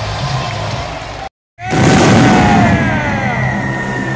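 Arena music over the PA, broken by a brief dead gap a little over a second in. Then comes a loud burst with several falling whistling tones as entrance pyrotechnics go off, and the music carries on.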